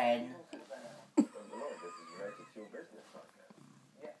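Indistinct speech in the background, with a single sharp click about a second in.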